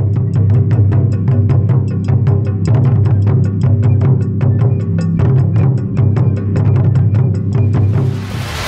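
Background music with a fast, steady drum beat of about five beats a second over sustained low notes.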